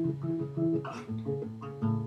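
Nylon-string classical guitar played alone, a sequence of plucked notes with a moving bass line between sung phrases.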